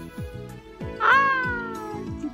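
Background music with a steady beat. About halfway through, one loud, high-pitched call that falls in pitch over about a second.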